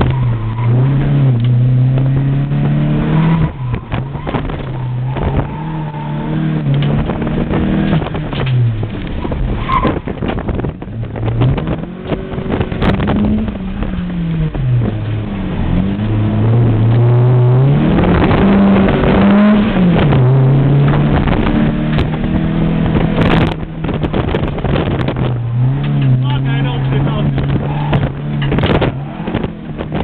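Car engine heard from inside the cabin, revving up and falling back again and again as the car is driven hard around a cone course, with tyre and wind noise beneath. It pulls hardest and loudest a little past halfway.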